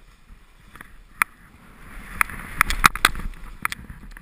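Sliding downhill through deep powder snow: a hiss of snow that swells about halfway through, with several sharp clicks and knocks close to the camera.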